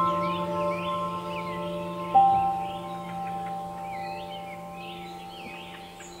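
Soft ambient background music of sustained bell-like tones, with one new note struck about two seconds in and slowly fading, over light bird chirping.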